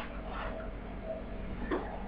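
Low steady room hum with faint background noise, and one small click near the end.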